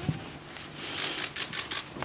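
A rapid, irregular run of sharp clicks over a steady rustling hiss.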